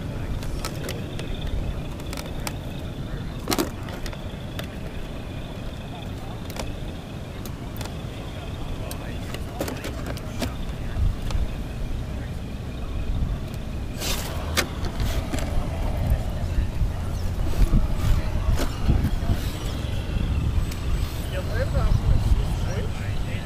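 Scale RC rock crawler being handled and driven on rock: a faint steady high whine with a few sharp knocks, over a low rumble of wind on the microphone. The sound grows louder in the second half as the truck crawls.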